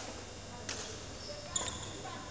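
Badminton rally: a shuttlecock is struck by rackets twice, two sharp hits about a second apart, the second louder, with a brief high squeak or ring.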